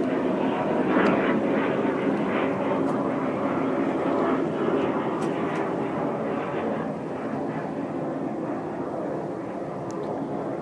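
Airplane flying past overhead, its engine noise a dense rushing drone that peaks about a second in and then slowly fades as it moves away.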